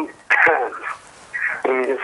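A caller speaking over a telephone line into a TV broadcast, the voice thin and narrow. There is a short pause near the middle.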